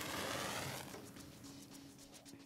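Freshly struck wooden match flaring with a faint hiss that fades away over about a second.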